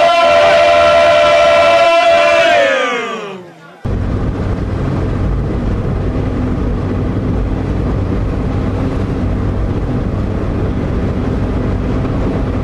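A group of men singing together, holding a long chord that all the voices then slide down in pitch before stopping about three seconds in. After a brief gap, a steady low rumbling noise fills the rest.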